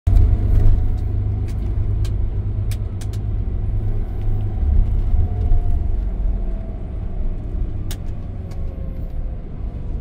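Inside a moving bus: a steady low engine and road rumble, with a few sharp clicks or rattles and a faint whine that slowly falls in pitch over the second half.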